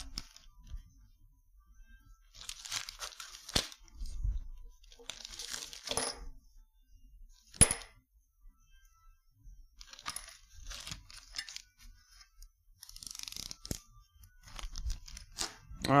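Hand tools and small metal valve parts being handled and set down on a workbench while valves are taken out of a cylinder head: scattered rustling and handling noise with several sharp metallic clicks, the loudest about seven and a half seconds in with a brief ring.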